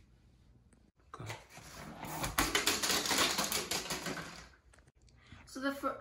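Plastic water bottles knocked over by a rolled ball, falling and clattering on a hardwood floor: a dense, rapid run of knocks lasting about three seconds. A girl's voice starts speaking near the end.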